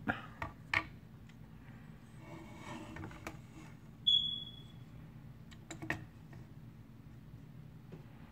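Plastic toy figures being handled and set down on a wooden tabletop: scattered light clicks and knocks, with a short high-pitched squeak about four seconds in, over a steady low hum.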